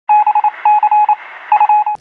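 Electronic beeps at one steady high pitch, switched on and off in short and long pulses like Morse code, in three quick groups. This is a news report's intro sting.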